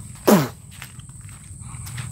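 A boy blowing a raspberry with his lips, one short fart-like noise that drops sharply in pitch, imitating the fart sounds babies make with their mouths.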